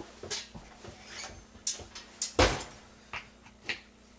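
Short metallic clicks and clinks from brass rifle cases being handled at a Lee bench press fitted with an RCBS primer pocket swager, with one heavier thump about two and a half seconds in.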